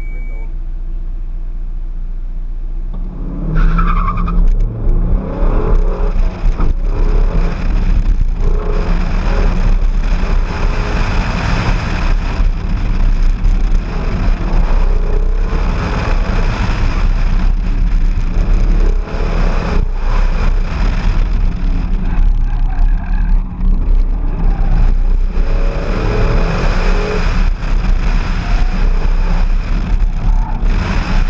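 Car engine idling at the start, then launched hard about three and a half seconds in and driven at high revs through an autocross course. The engine rises and falls in pitch, with tyre and wind noise, heard from inside the car.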